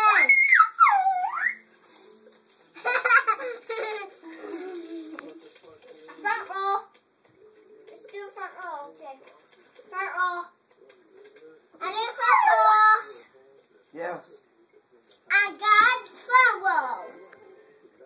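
Young children's high-pitched voices in short bursts of squealing and wordless chatter, separated by brief quiet gaps.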